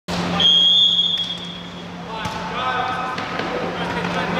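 Referee's whistle: one long, high blast near the start, signalling the set kick. About two seconds in comes a sharp knock of the ball being struck, followed by players calling out, with a steady low hum underneath.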